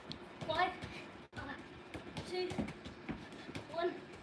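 Soft, repeated taps of a football being touched with the feet on artificial turf, with faint voices in the background.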